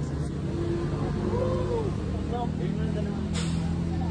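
Faint voices in the background over a steady low mechanical hum, like an engine running.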